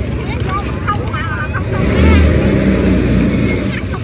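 A motor vehicle engine running close by, louder for about two seconds in the middle, under the voices of a crowd.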